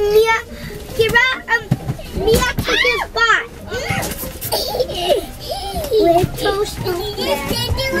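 Young children's high-pitched voices chattering and squealing as they play inside a minivan cabin.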